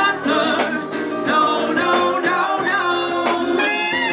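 Live ska band playing a song: a woman sings lead over trumpet, saxophone, drums and keyboard.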